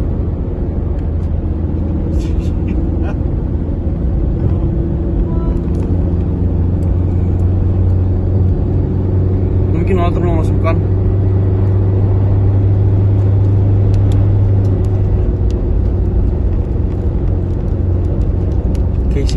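Engine and road noise of a moving vehicle heard from inside its cab: a steady low drone that grows a little louder toward the middle and eases slightly about fifteen seconds in.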